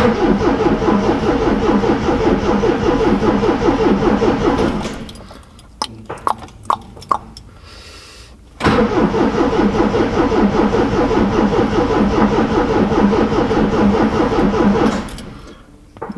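Triumph TR7's engine turning over on the starter motor with an even, rhythmic churn for about five seconds without firing. After a short pause it cranks again for about six seconds and still does not catch, because the long-abandoned engine is getting no fuel from the tank.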